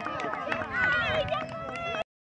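Several voices calling out at once across a youth soccer field, overlapping, with running footsteps of the players on the turf.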